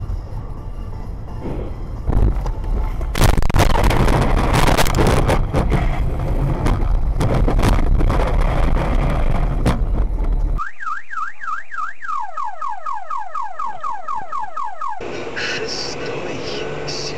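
Heavy rumbling with repeated knocks as a car runs off the road and bounces along the rough dirt shoulder. It is followed by a car alarm sounding a rapid repeating siren pattern for about four seconds, several falling-pitch whoops a second, which stops suddenly.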